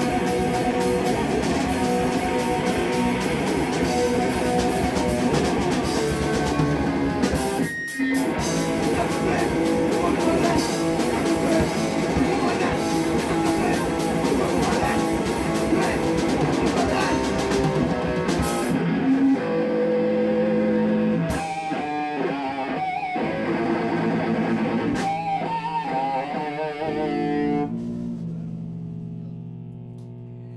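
Live rock band playing loudly: electric guitars, bass and drum kit, with a brief break about eight seconds in. Past the midpoint the full beat drops away to sparser held guitar chords with a couple of single drum hits. The song then winds down, leaving the guitars ringing out as a low steady hum near the end.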